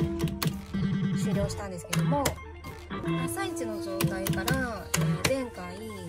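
Funky Juggler pachislot machine being played, with sharp clicks every half second to a second from its lever and reel-stop buttons over music with pitched, bouncing tones.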